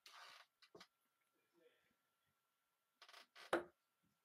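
A steel-tip dart striking a Winmau Blade 5 bristle dartboard once, a short sharp thud about three and a half seconds in. Before it, faint brief rustles and small clicks.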